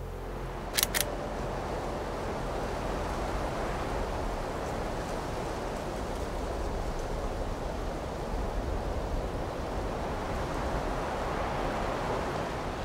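Wind buffeting the microphone on an exposed mountain ridge: a steady rushing noise with a low rumble. Two short clicks come about a second in.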